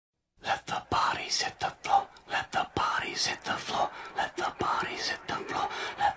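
An indistinct voice talking in quick, broken bursts, too unclear to make out words.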